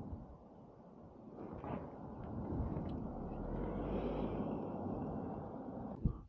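Low, muffled rumble of wind and road noise from a motorcycle on the move, quiet at first and growing louder about a second and a half in.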